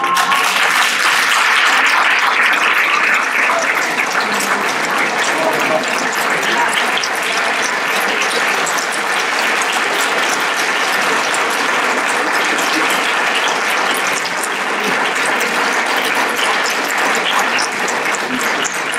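Sustained applause from a theatre audience, with the cast on stage clapping along; it breaks out at once and holds steady throughout.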